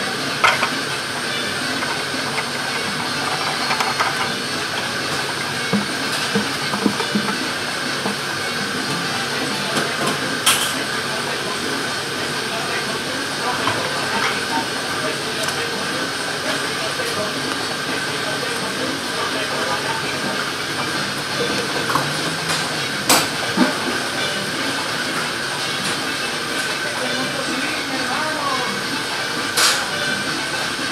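Steady hiss of commercial bakery ventilation and oven fans, with a constant high whine running through it. A few sharp knocks stand out, about four in all.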